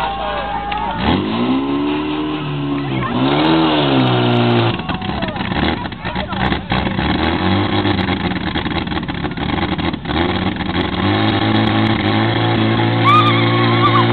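Portable fire pump's petrol engine catching about a second in and revving hard, rising and falling in pitch, then running at high speed and steady while it drives water through the hoses, with a louder steady stretch near the end.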